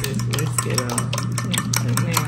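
Raw eggs being beaten in a ceramic bowl with a metal utensil: rapid clicks of metal against the bowl, several a second, with the liquid sloshing.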